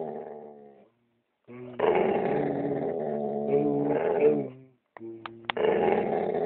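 Pit bull's drawn-out, growly 'singing' howl, held in long steady notes: one stretch from about a second and a half in, then a short break and a second stretch near the end.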